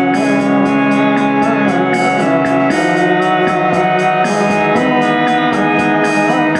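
Electronic keyboard played live through amplifiers, holding loud organ-like chords with a steady pulse in the high end about four times a second; the chord changes about three seconds in.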